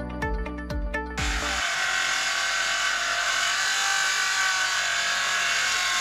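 A music jingle ends about a second in, followed by a DeWalt circular saw running steadily as it cuts through a wooden board.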